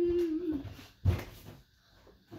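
A child's voice holding one long, slightly falling note, then a thump and rustling of movement about a second in.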